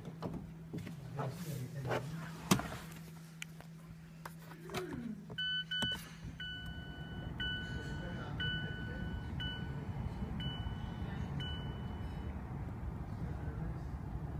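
A car's electronic warning chime: two short beeps, then a two-tone ding repeating about once a second six times before stopping, with the ignition switched on in a 2016 Toyota Yaris sedan. A few sharp clicks and knocks from handling the car come before it.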